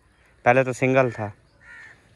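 A man's voice saying two short words about half a second in, with a faint soft sound near the end.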